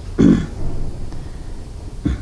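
A woman's short throat-clearing grunt, once, about a quarter-second in, over a steady low hum.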